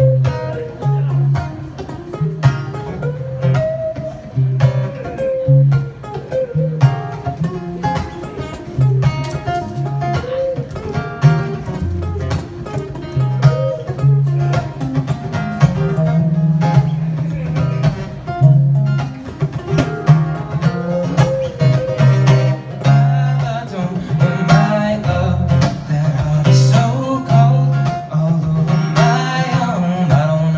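Live acoustic and electric guitars playing an instrumental passage together, with a repeating pattern of low bass notes under chords and melody lines.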